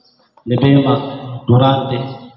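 A man speaking into a handheld microphone, starting about half a second in after a short pause.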